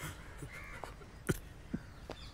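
A crow cawing faintly in the background, with a few short sharp clicks. The loudest click comes just past a second in.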